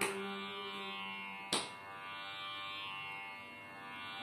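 Tanpura-style drone accompanying Carnatic singing, its strings sounding in turn about every one and a half seconds, each pluck ringing out over the held drone.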